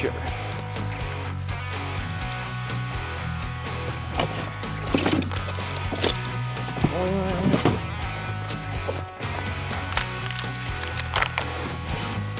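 Background music, with a few sharp clacks and knocks as hard plastic toolbox lids and latches are handled and opened.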